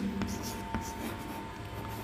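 Chalk scraping on a chalkboard as a word is written in cursive, with a few light taps of the chalk.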